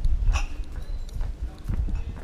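Footsteps of a person walking on a hard street, irregular knocks picked up by a body-worn camera, over a low rumble on the microphone.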